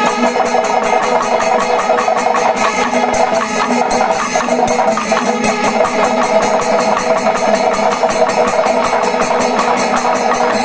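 Panchavadyam, the Kerala temple ensemble, playing continuously: curved kombu horns holding long, steady notes over fast, dense drumming and cymbal strokes.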